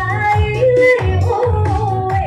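A woman singing a Dayak Rijoq song into a microphone over amplified electronic keyboard accompaniment with a steady beat about twice a second, her melody sliding and wavering between held notes.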